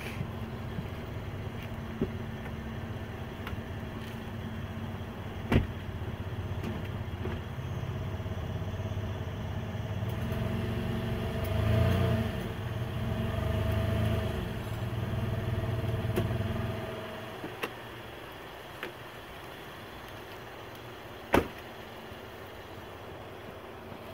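Tow vehicle's engine running as it slowly pulls the trailer forward so the wheel rides up onto the jack. It grows louder under the load a little before halfway, then falls away about two-thirds through. There is a sharp clack about five seconds in and another near the end.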